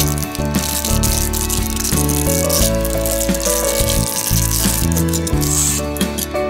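Background music with steady notes, over the crackle of a thin clear plastic wrapper being crinkled and pulled open by hand to free a small badge.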